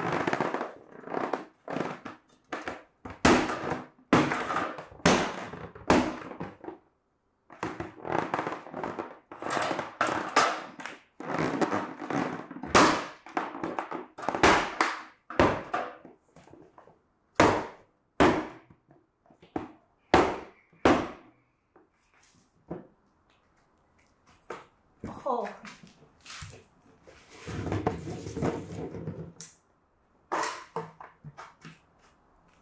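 Tennis shoes stomping on the edge of a Gamma Seal lid on a plastic bucket: an irregular series of sharp thuds and cracks as the lid's ring is forced down onto the bucket rim, with a quieter pause a little past the middle.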